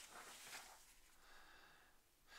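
Faint rustle of a magazine page being turned by hand, in the first half second; after that, near silence.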